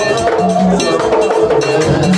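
Vodou ceremonial dance music led by a struck metal bell that keeps a quick, repeating rhythm over other percussion.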